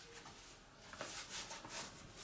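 Faint rustling and rubbing of a baseball cap being pulled onto the head and adjusted by hand, with a few soft scuffs in the second half.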